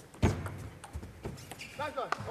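Table tennis ball being struck by rackets and bouncing on the table in a short rally: a series of sharp clicks, the loudest about a quarter of a second in.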